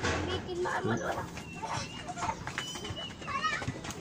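Background voices talking on and off, some of them high-pitched like children's; no mechanical sound from the car.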